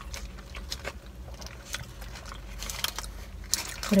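Close-miked chewing of a McDonald's burger: a run of short, irregular wet clicks and crunches from the mouth, over a low steady hum.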